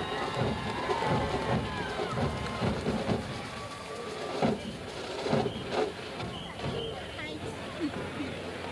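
Stadium crowd noise: spectators near the microphone talking and calling out, with a few held musical notes in the first couple of seconds.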